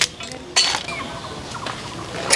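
Two sharp clinks at a large aluminium cooking pot, one right at the start and one about half a second in, as whole spices go into the steaming water, with faint short bird calls in the background.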